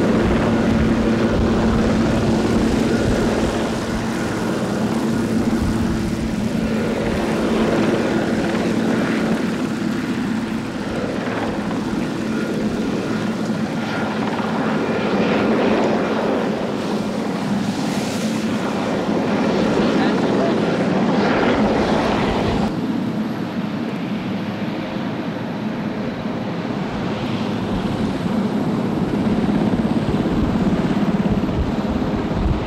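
Marine One, a Sikorsky Sea King helicopter, running as it comes in and taxis: rotor and turbine noise with a steady low hum. An abrupt cut about three-quarters of the way through changes the sound.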